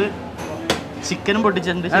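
A man speaking, with a single sharp knock of kitchen clatter about two-thirds of a second in.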